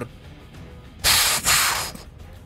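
Two short hissing bursts of noise in quick succession about a second in, an explosion sound effect, over quiet background music.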